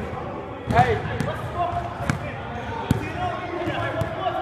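A basketball bouncing on a hard court: a handful of sharp, irregularly spaced bounces, the loudest one just under a second in, among players' voices.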